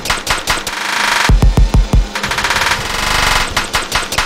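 Live-coded electronic music from TidalCycles: rapid-fire, stuttering drum hits in machine-gun-like rolls, with blocks of noisy hiss and a deep bass pulse coming in about a second in.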